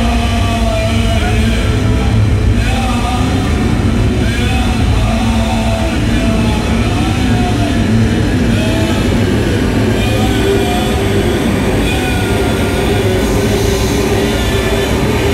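Loud, dense noise-music drone from a live performance: a steady low rumble with wavering, gliding tones above it.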